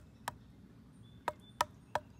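Knuckles rapping on the trunk of a tulip tree (Liriodendron tulipifera), a series of sharp knocks: one early, then three in quick succession in the second half, each with a short hollow-sounding ring.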